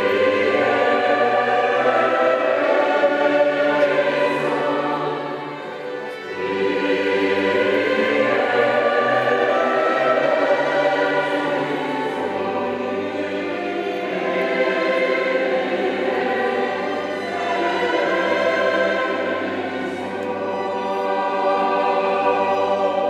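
Choir singing liturgical music with instrumental accompaniment in long held phrases over a steady low bass, dipping briefly about six seconds in.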